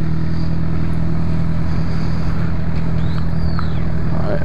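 Motorcycle engine running steadily at low speed as the bike rolls along, heard from the rider's own machine.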